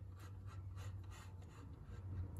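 Pen tip scratching across a plywood board in quick short sketching strokes, faint, over a steady low hum.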